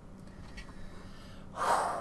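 A man's sharp intake of breath through the mouth, about one and a half seconds in, after a short pause. It is the breath taken just before he speaks.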